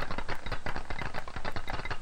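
Rapid, irregular clicking and rattling of small balls standing for gas molecules, bouncing off the walls and the vibrating barrier of a tabletop model of a gas.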